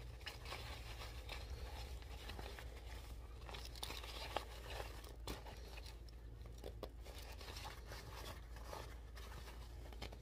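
Faint rustling and crinkling of a thin black fabric hat and its attached hairpiece being handled and fitted, with scattered small clicks and scrapes.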